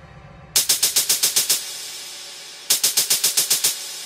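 Drum-machine hi-hat sample in a fast electronic roll, about ten crisp hits a second. It plays twice, each run lasting about a second, the first about half a second in and the second just before three seconds in.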